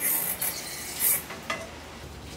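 Hot wok sizzling as water hits it at the sink: two short hisses, the second about a second in, followed by a light clink.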